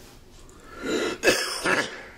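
A man clearing his throat once, about a second long, starting just under a second in.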